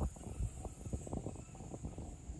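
Thunder rumbling: an irregular low rumble broken by many small crackles, over a faint steady high-pitched drone.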